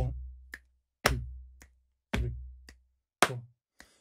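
Body percussion played to a steady beat: a deep thump about once a second with a finger snap half a beat after each, then a sharp slap and a short brushing sound near the end.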